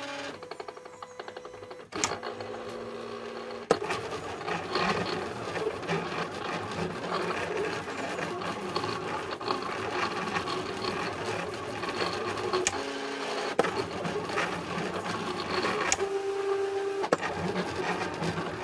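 Silhouette Cameo cutting plotter running a cut job on masking vinyl: its motors whir and buzz in shifting pitches as the blade carriage travels across and the rollers feed the sheet. A couple of sharp clicks come in the first few seconds as it gets going.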